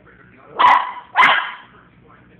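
Brussels griffon barking twice, sharp barks about two-thirds of a second apart, the second about a second in. He is barking at being unable to jump up.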